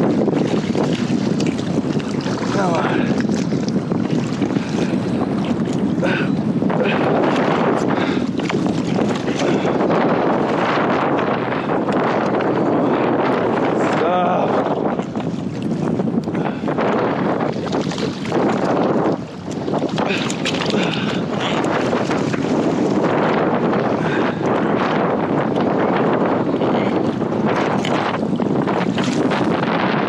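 Strong wind buffeting the microphone over splashing water as a small hammerhead shark writhes against the side of a kayak.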